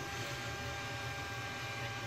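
Anycubic 3D printer running mid-print, feeding filament off the spool: a steady low hum with a faint constant whine.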